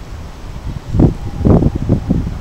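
Wind buffeting the camera's microphone: a steady low rumble, with several harder gusts about a second in and around a second and a half.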